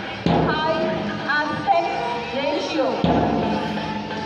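Music playing over a public-address system, with two heavy thumps, one a quarter-second in and one about three seconds in.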